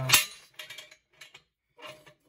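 Steel jack stand being set under the car: one loud metal clank just after the start, then a few faint clicks as the stand's ratchet post is raised toward the frame.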